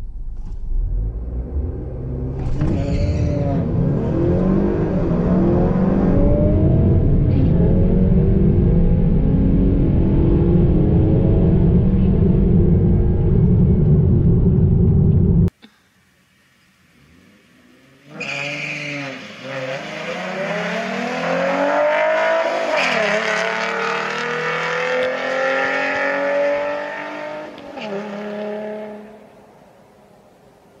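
Inside the cabin, a Honda Accord Sport's 2.0-litre turbocharged four-cylinder accelerating hard down a drag strip under heavy road rumble, its note rising through each gear of the 10-speed automatic and dropping at every shift; the sound cuts off suddenly about halfway. After a brief lull, the Accord and a V6 Mustang launch from the line as heard from trackside, their engines rising through the gears and fading as they run down the strip.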